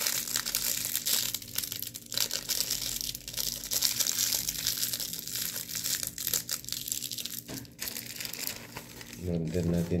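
Clear plastic packaging crinkling and crackling irregularly as it is handled and unwrapped by hand.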